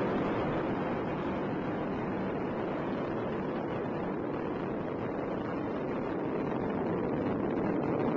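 Steady rushing roar of the Space Shuttle's two solid rocket boosters and three main engines during ascent.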